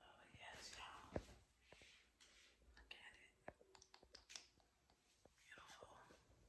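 Near silence with a faint whispered voice close to the microphone and a few soft clicks, the sharpest about a second in.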